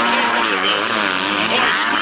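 Several MX2-class four-stroke motocross bikes racing, their engines rising and falling in pitch again and again as the riders work the throttle and shift, over a steady background din.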